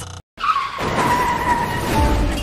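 Vehicle tyres screeching in a hard skid, as in emergency braking before a collision. The squeal starts after a split second of silence and holds for over a second, its pitch sliding slightly down.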